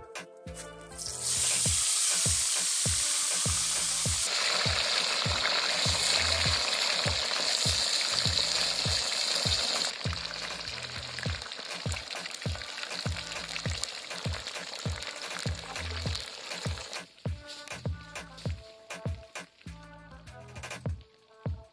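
Fish going into hot oil in a wok and frying, a loud sizzle that starts suddenly about a second in. It eases somewhat about halfway through and dies away near the end.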